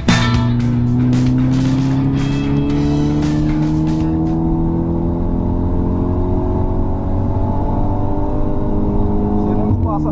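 Mercedes C250 Coupé engine accelerating hard, its note rising slowly and steadily through one long pull in gear, then dropping sharply near the end as it shifts up. The tail of a music track fades out over the first few seconds.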